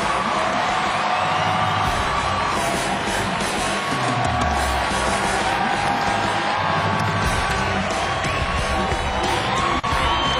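Ring entrance music playing loudly over a crowd cheering and whooping.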